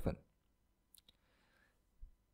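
The end of a spoken word, then near silence with two faint, short clicks close together about a second in: a computer keyboard key being pressed.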